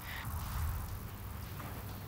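Quiet outdoor background: a low, steady rumble under a faint even hiss, with no distinct strikes.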